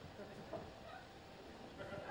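Hushed audience in a quiet room, with a faint, short voice-like sound about half a second in, such as a stifled laugh or murmur.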